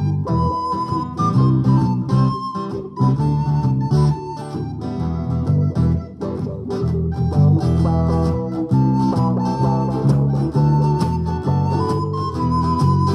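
Instrumental break in an acoustic folk band: a soprano recorder plays the melody in held notes over strummed acoustic guitars and an electric bass.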